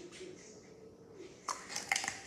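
Homemade slime being worked and poked in the hands, giving two sharp little pops, about one and a half seconds in and again near the end.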